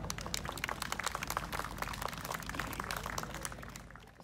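Small audience applauding, the clapping tailing off near the end.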